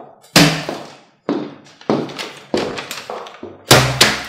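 Footsteps on a hard floor, about one every half second, with a louder thump near the end as something is set down on the table.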